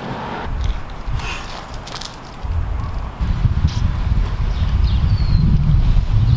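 Wind buffeting the microphone outdoors: a low rumble that grows markedly stronger about two and a half seconds in, with a few faint clicks.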